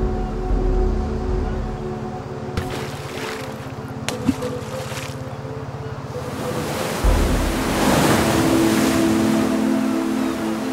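A small fishing boat's engine idling with a steady, even low throb. From about seven seconds in, surf rushes and breaks over rocks, louder than the engine.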